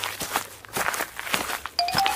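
Cartoon footstep sound effects, a regular run of short steps about two or three a second. Near the end a rising series of short tones begins.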